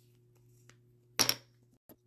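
Brief handling sounds of a liquid concealer tube and its doe-foot applicator: one short sharp rustle about a second in and a small click near the end, over a faint steady hum.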